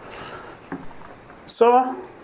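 Quiet room tone with a faint steady hiss and a single faint tick just under a second in, then one spoken word near the end.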